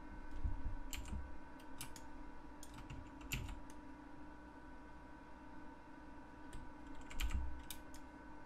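Computer keyboard keys and mouse buttons clicking in scattered, irregular presses, with a few dull low thumps between them. A faint steady hum runs underneath.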